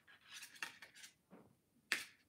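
Faint scraping and light metallic ticks of thin 20-gauge black craft wire being drawn through a wire frame by hand, with a brief sharper hiss near the end.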